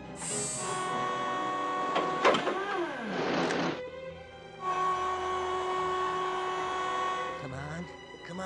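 Cartoon soundtrack music with steady held notes. Partway through, a character's voice cries out and then cuts off suddenly, and the held notes come back.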